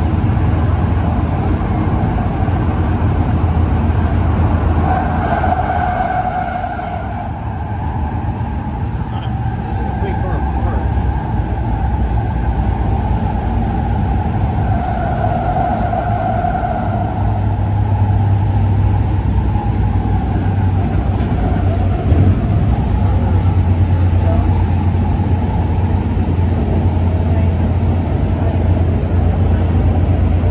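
Interior of a P3010 light rail car running at speed between stations: a steady low rumble of the wheels on the track, with a higher whine that swells about five seconds in and again about fifteen seconds in.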